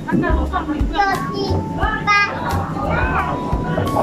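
Busy restaurant background: music with a pulsing bass beat under the chatter of other diners, among them children's voices.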